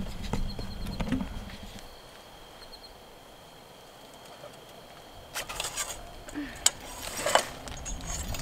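Plunger rod scraping and clinking inside a metal hay probe tube as it is pushed through to force out a hay core, a run of sharp scrapes and clicks in the last few seconds after a quiet start.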